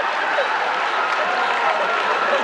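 Large concert audience applauding, a dense, steady clatter of many hands, with some voices mixed in.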